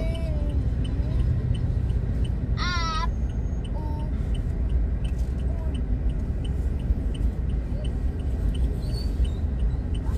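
Inside a car idling in stopped traffic: a steady low engine and road rumble, with the turn-signal indicator ticking evenly about three times a second. About three seconds in, a short, high, wavering voice cuts across it.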